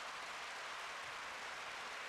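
Faint steady hiss with no distinct sounds.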